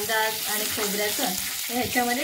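A tempering of cumin seeds, garlic cloves and curry leaves sizzling in hot oil in a nonstick kadhai while a spatula stirs and scrapes through it.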